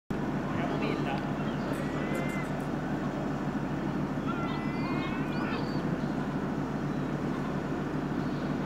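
Outdoor city street ambience: a steady rumble of traffic with indistinct voices.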